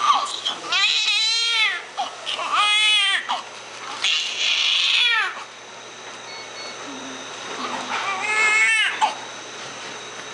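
Newborn baby crying in four short, high wailing bursts, with a pause of a few seconds before the last one.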